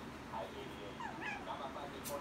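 Pomeranian puppy whimpering: a few faint, short, high-pitched whines, most of them clustered about a second in.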